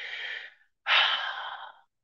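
A woman breathing heavily into a close microphone: a softer breath of about half a second, then a louder, longer one of about a second.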